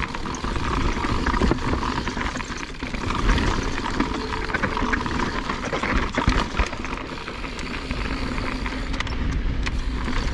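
Mountain bike descending a rocky dirt trail: a steady rush of wind on the microphone, with the tyres crunching over dirt and rock and the bike rattling and knocking over the bumps.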